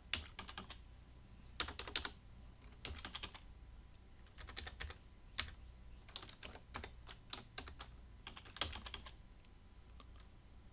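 Typing on a computer keyboard: short bursts of quick keystroke clicks separated by brief pauses.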